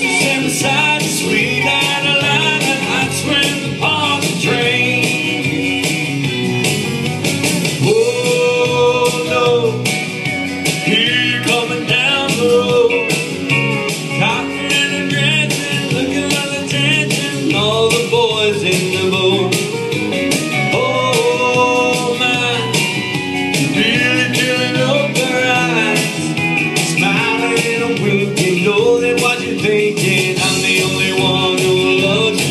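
Live country band playing an instrumental break between sung verses: a lead melody line over guitar and a steady beat.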